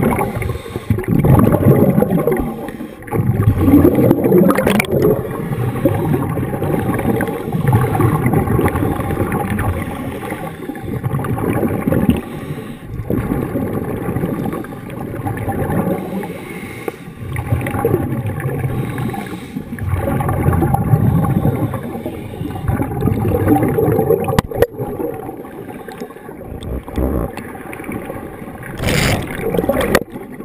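Scuba regulator exhaust bubbles gurgling underwater, heard in swells every few seconds as the divers breathe out, with a faint steady hum beneath.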